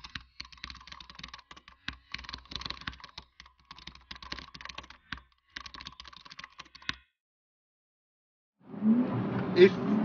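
Typing sound effect: bursts of rapid key clicks that stop suddenly about seven seconds in. After a short silence, a car engine and a man's voice come in near the end.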